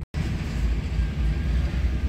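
Steady low rumble of an idling truck engine heard from inside the cab, after a brief dropout at the very start.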